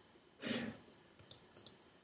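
A short exhale about half a second in, then a computer mouse clicked four times in two quick pairs, faint and sharp.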